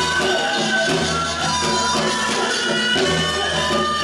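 Live Korean traditional folk music accompanying a tightrope act: held melodic notes over a low drum beat that pulses about once a second.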